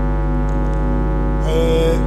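Soft background music of steady, sustained chords over a constant low hum, with a brief held vocal note near the end.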